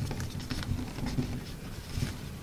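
Origami paper rustling and crinkling as it is folded and tucked by hand, in short irregular scrapes and taps.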